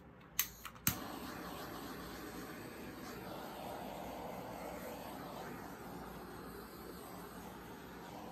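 Handheld torch lit with two clicks of its igniter, then a steady hiss of the flame as it is played over the wet acrylic pour to bring up cells.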